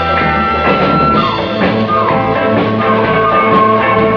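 A live rock band playing, with electric guitar and drum kit, and held notes and lines that slide in pitch.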